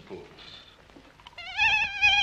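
A schoolboy's prank noise disrupting the class: a long, high, wavering cat-like meow that starts about one and a half seconds in.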